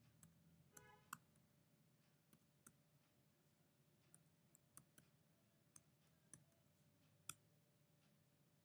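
Faint computer keyboard key clicks, about ten scattered keystrokes, as a word is typed into a text field, over a faint steady hum.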